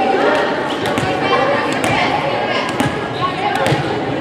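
Players' voices and calls in a large gym, with several sharp smacks of a volleyball about a second apart.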